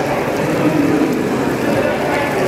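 Steady babble of many voices in a busy indoor hall, over a constant wash of background noise.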